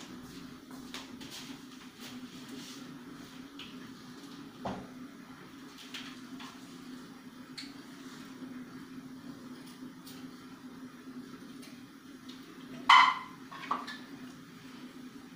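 Faint clicks and taps of a knife and utensils handled over a bowl, with a sharper knock about five seconds in, over a steady low hum. Near the end comes a sudden loud sound, followed by a smaller one.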